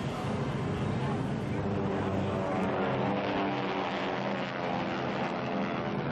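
A propeller aircraft's engine drone passing by, its pitch gliding slowly down in the second half, over crowd noise.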